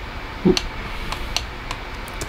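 About four sparse clicks from a computer mouse and keyboard being worked, over a steady low background hum, with a short low sound about half a second in.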